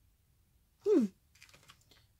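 A few faint, light clicks and taps in quick succession in the second half, from handling a paper product card and a small plastic blush compact on a tabletop, after a short murmured 'hmm' about a second in.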